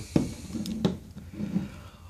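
Handling clicks and knocks from a small plastic RC transmitter, the Estes Proto X controller, as it is handled and set down on a hard floor. There are a couple of short sharp clicks amid faint rustling.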